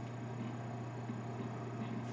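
Quiet room tone with a steady low hum and faint background hiss.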